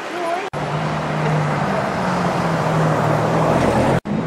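Street traffic with a nearby vehicle engine running steadily, its hum growing slightly louder toward the end.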